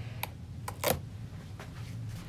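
A few light clicks and taps of plastic items being handled, the loudest just under a second in, over a steady low hum.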